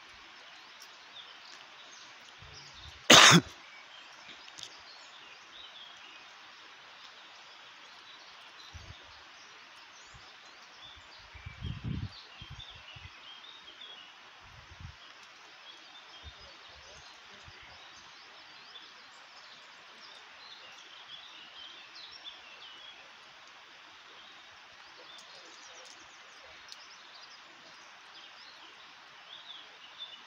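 Outdoor ambience: a steady hiss with many faint scattered bird chirps. One short, loud burst about three seconds in, and a brief low rumble around twelve seconds in.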